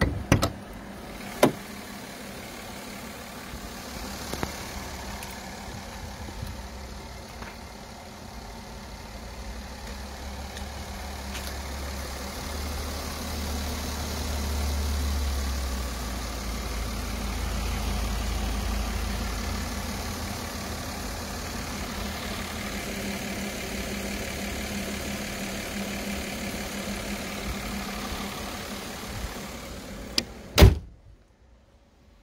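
Mercedes-Benz S 350's 3.5-litre petrol V6 idling steadily, louder in the middle stretch when heard close up over the open engine bay. A few sharp clicks in the first couple of seconds come from the hood-release catch being worked.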